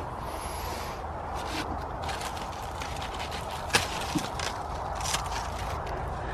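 Steady outdoor background hiss with a few scattered short rustles and light knocks from plants and footing being disturbed.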